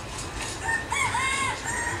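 A rooster crowing once: a cock-a-doodle-doo of several arched notes lasting about a second, over a low steady background rumble.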